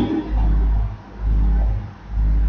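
A deep low rumble that swells and fades three times, roughly once a second.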